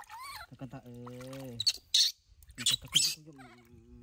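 A newborn macaque being bathed gives short, thin squeaks while water splashes loudly twice as it is dipped and rinsed. Under it, a man hums two long, low, steady notes.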